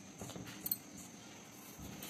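Fingers rubbing dry flour against the inside of a steel mixing bowl: faint rustling and scraping, with one small sharp click about two-thirds of a second in.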